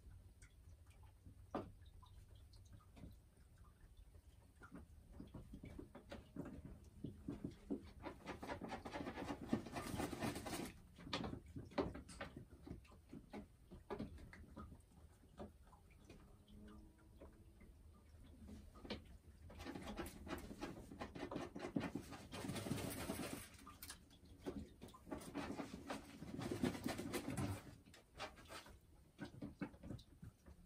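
Boris Brown hen settled in a straw-lined nest box, with rustling and crackling of the nesting straw coming in several bursts, and a few faint soft low calls between them.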